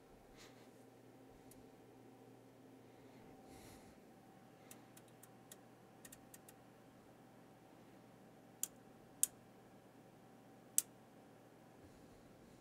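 Several faint ticks, then three sharp clicks in the second half, the last two about a second and a half apart: front-panel switches and knobs on an oscilloscope plug-in being turned, under a faint steady hum.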